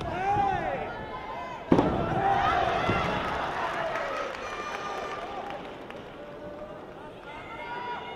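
Shouted voices during a karate kumite bout, cut by one sharp smack about two seconds in, the loudest moment; the shouting goes on briefly after it, then dies down.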